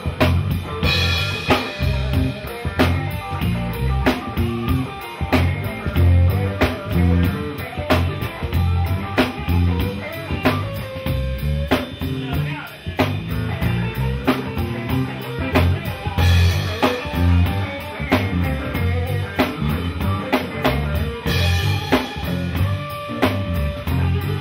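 Live blues band playing: electric guitar over electric bass and a drum kit keeping a steady beat.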